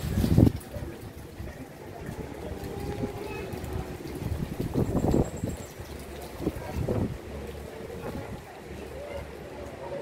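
Indistinct voices of people talking in the background, in a few short bursts over a low steady murmur.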